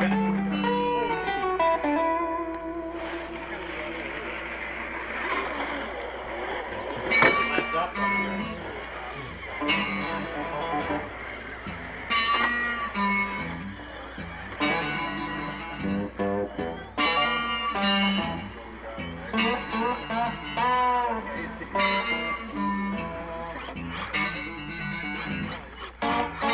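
Background music track featuring guitar.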